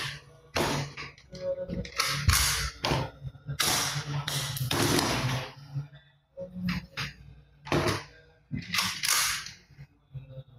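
Hard plastic toy guns clattering and clicking as they are handled and shifted on a tabletop: a string of short knocks and clicks with a few longer rattles.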